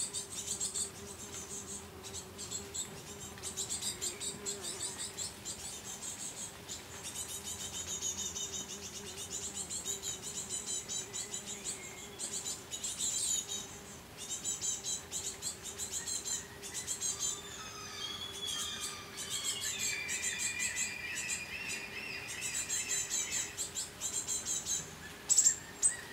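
Birds chirping and singing, several overlapping calls throughout, over a faint steady low hum.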